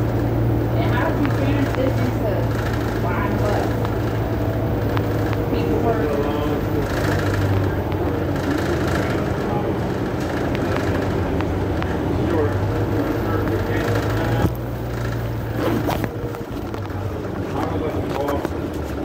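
Low, steady drone of a city bus's engine and drivetrain heard inside the cabin while riding, with indistinct voices over it and a single sharp knock about fourteen seconds in.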